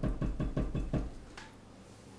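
A stone seal tapped rapidly into a dish of red seal paste to ink it for stamping: a quick run of about seven knocks that stops about a second in.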